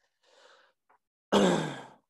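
A faint breath, then a single loud cough from a man about a second and a half in.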